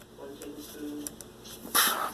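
A few faint clicks from the windage turret of an SWFA SS 20x42 riflescope being turned by hand, not quite as loud as the other turret. Near the end, a short loud breath-like hiss.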